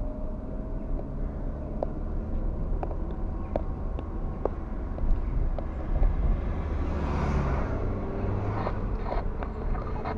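Steady low rumble of a car driving, engine and tyre noise heard inside the cabin, with faint ticks scattered throughout. About seven seconds in a brief louder rush of noise rises and fades.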